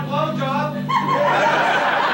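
A man laughing in short repeated bursts over a steady low hum. About a second in the hum stops and laughter and voices from several people take over.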